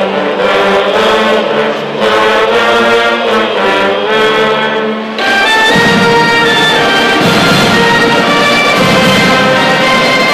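A school marching band's brass section, trumpets and trombones, playing a melody in held notes. About five seconds in, the band's sound grows fuller and a little louder.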